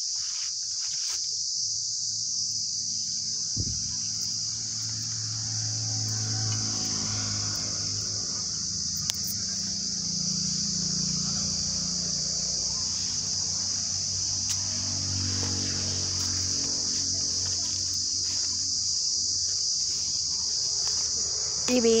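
Insects chirring in one steady, continuous high drone. A low hum runs underneath for much of the middle.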